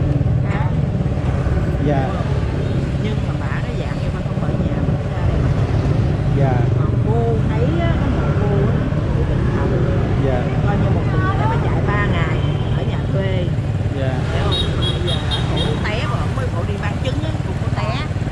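Steady low rumble of motorbike street traffic, with voices talking in snatches over it. A short run of high beeps comes about fourteen seconds in.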